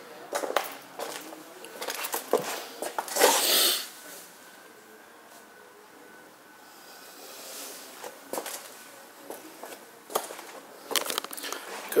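Handheld camera handling noise and footsteps in a small room: scattered knocks and clicks, with a louder rustling burst about three seconds in.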